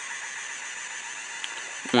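3D pen's filament feed motor and cooling fan running with a steady whir as it extrudes a line of plastic filament.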